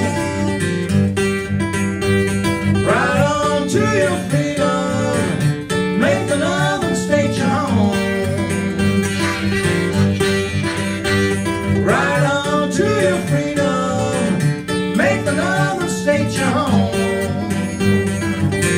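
Instrumental blues break on acoustic guitar and harmonica: steady guitar strumming, with harmonica phrases of bent notes coming in a few seconds in and recurring every few seconds.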